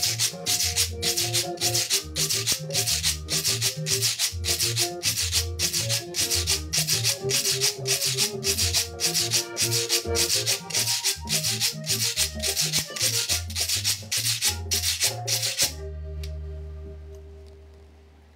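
Guacharaca scraped in a steady rhythm of quick strokes along with recorded vallenato music, with an accordion melody and a bass line. The music stops about 16 seconds in, leaving a low held note that fades out.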